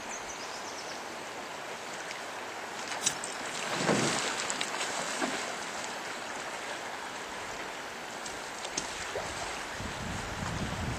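Steady rush of a fast river, with a louder burst of splashing about four seconds in as a hooked chinook salmon thrashes at the surface near the landing net. A single sharp click comes just before the splashing.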